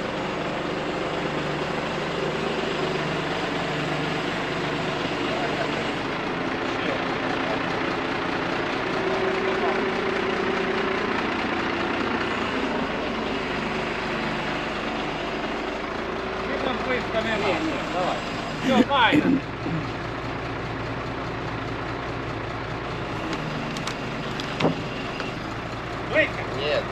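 Crane truck's engine running steadily to drive its hydraulic loader crane as it lowers a strapped load of concrete slabs, its tone shifting a little twice in the first half. Brief shouted voices come in about two-thirds of the way through.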